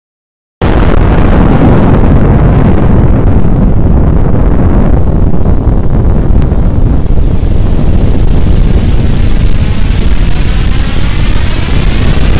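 Nuclear explosion sound effect: a sudden blast about half a second in after a moment of silence, then a long, very loud, steady rumble heavy in the low end.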